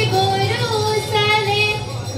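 A woman singing a Bihu song in a high voice through a microphone and hall PA, holding long notes that waver and slide between pitches.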